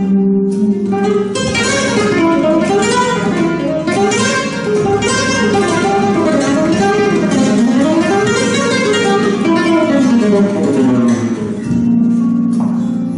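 Andalusian Simplicio flamenco guitar played solo with fingers: fast runs of plucked notes that climb and fall again and again, ending on a chord that is left to ring.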